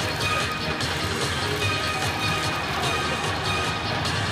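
Music with a regular beat filling a football stadium, over the steady noise of the crowd.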